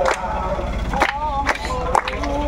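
A group of people singing a devotional chant, with several sharp hand claps, over a low steady rumble.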